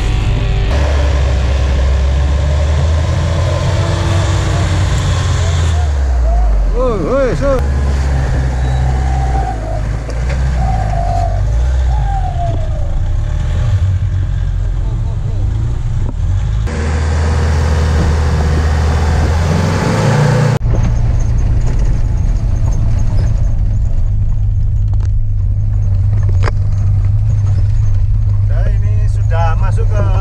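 Four-wheel-drive vehicle engines running on a muddy off-road trail, with voices calling out over them. About two-thirds of the way in, the sound changes to a steady engine drone heard from inside a vehicle's cab.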